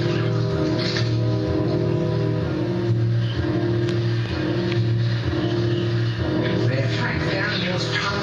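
Background music from a nature documentary soundtrack, with sustained low notes, between lines of narration.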